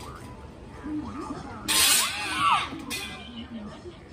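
A short, loud scream about two seconds in, lasting about a second, its pitch arching up and down. Low voices and background music run underneath.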